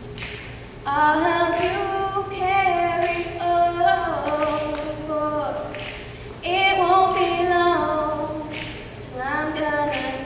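A teenage girl singing solo a cappella into a handheld microphone, with long held notes in phrases broken by short breaths.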